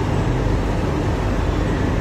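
Steady, even background noise with no distinct events: a low rumble under a hiss, the room's constant noise between spoken sentences.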